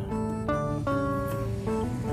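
Background music: an acoustic guitar picking a melody of single plucked notes, a new note every few tenths of a second.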